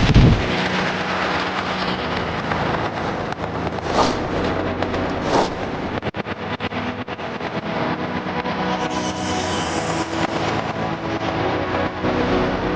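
Sound effects of an animated outro: a deep boom as it begins, then two quick whooshes about four and five and a half seconds in, over a steady low drone.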